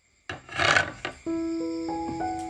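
A brief rasping scrape of a knife across a wooden chopping board, swelling and fading within about a second. Background music with held notes then comes in.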